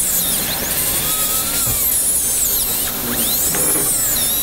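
Dental handpiece spinning a dry fluted bur against a tooth, grinding off leftover bracket-bonding composite with no water spray. The high whine keeps swooping up and down in pitch as the bur is pressed on and eased off.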